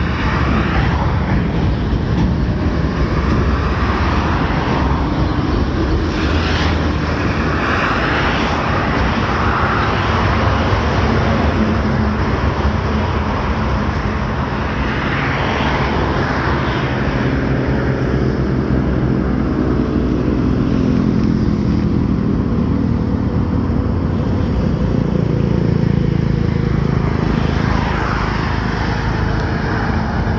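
Steady, loud road and wind noise from a motorcycle riding along a highway, with a droning engine note that rises and falls in pitch around the middle.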